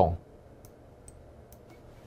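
A few faint, sharp clicks of a computer mouse, about four in a second and a half, as an on-screen drawing tool is picked and used to mark up the screen.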